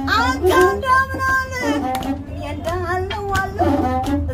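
A woman singing Ethiopian azmari song, with a masenqo (one-string bowed fiddle) playing along under her voice and a few sharp claps cutting in.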